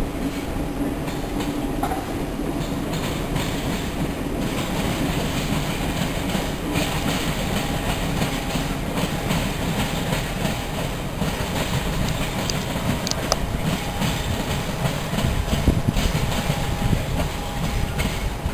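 Freight train of tank wagons rolling past, with a steady clatter of wheels over the rail joints that swells slightly near the end.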